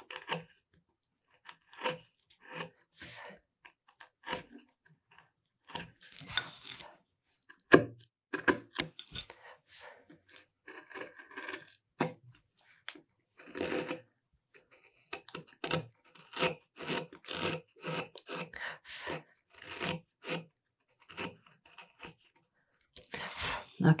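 A #3, 6 mm carving gouge pushed by hand through hard mahogany: a series of short slicing and scraping cuts with irregular pauses, coming more quickly in the second half.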